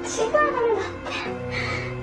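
Background music with steady held tones, with a man's voice exclaiming briefly near the start.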